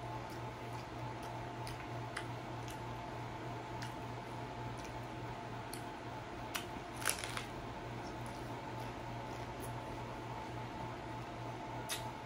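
Crisp hard taco shell crunching as it is chewed, with sharp crackles scattered throughout and a louder burst of crunching about seven seconds in, over a steady low hum.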